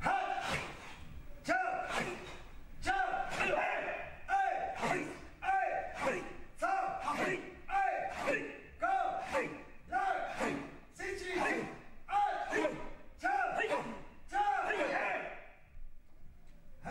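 Karate practitioners calling out short shouts in a steady rhythm with their punches, about one every two-thirds of a second.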